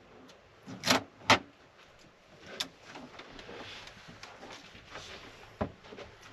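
Sharp clicks and knocks of a plastic appliance case being handled: two crisp clicks about a second in, then rustling and scattered knocks as the Ecoflow Wave 2 portable air conditioner, with its battery attached, is shifted and lifted.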